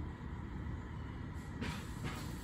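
A steady low outdoor rumble, like distant road traffic, with a short hiss starting near the end.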